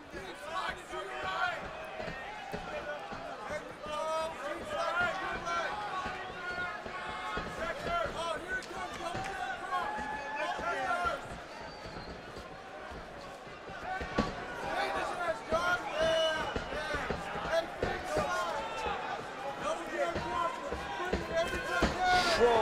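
Arena sound of a live MMA bout: voices calling out from the crowd and corners over a hum of crowd noise, with scattered thuds of strikes and bare feet on the octagon canvas. One sharper thud lands about fourteen seconds in.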